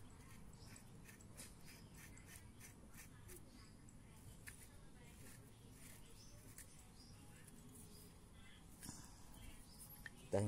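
Near silence, with faint scattered clicks of small metal parts being handled as a threaded rod is screwed into a shock absorber tube by hand.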